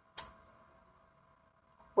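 A single short, sharp click about a fifth of a second in, then near silence with only a faint steady hum of room tone.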